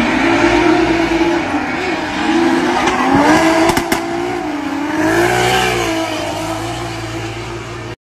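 Drift cars' engines revving on track, their pitch wavering up and down as the throttle works through the slides, with a few sharp clicks a little past the middle. The sound cuts off suddenly at the end.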